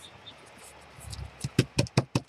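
Hands pressing and shifting glued junk-mail flyer paper on a table: quiet handling at first, then a quick run of sharp paper crinkles and taps from about a second in.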